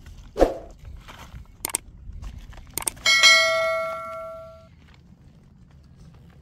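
A dull thump, then two sharp clicks followed by a bright bell ding that rings out and fades over about a second and a half: the click-and-bell sound effect of a YouTube subscribe-button animation.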